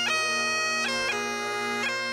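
Bagpipes playing a tune over a steady drone, the chanter stepping between notes a few times.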